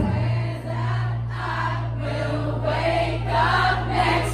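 Live pop band in a quieter breakdown: the drums drop out at the start, leaving a held low bass note under several voices singing, the audience joining in like a choir.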